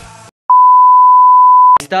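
A loud, steady 1 kHz bleep tone, one pure note lasting about a second and a quarter, cut in with dead silence before it and ending abruptly as speech resumes. It is an edited-in censor bleep over a spoken word.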